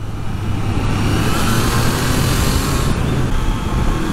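Triumph Trident 660's inline three-cylinder engine running steadily on the road, with wind and road noise. A rushing hiss swells in the middle and fades again about a second before the end.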